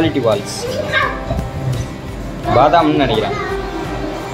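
High-pitched voices calling out twice, briefly at the start and again past the middle, over background music.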